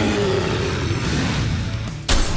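Added cartoon attack sound effect: a loud, rushing, engine-like noise for a toy car charging in, over background music. It cuts off suddenly at the end.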